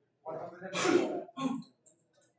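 A person clearing their throat, about a second and a half long and loudest in the middle.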